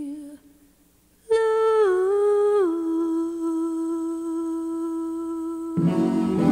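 A female jazz singer humming a wordless line. The last held note trails off, and after about a second's pause a new note comes in, steps down twice and is held steady for about three seconds. A fuller instrumental accompaniment enters just before the end.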